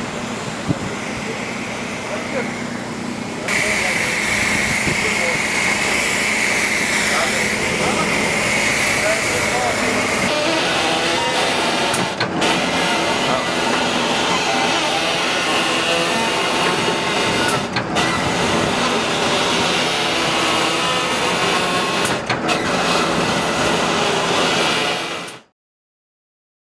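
Outdoor street sound with people's voices in the background and a vehicle engine running, jumping at several sudden cuts. It stops abruptly about a second before the end.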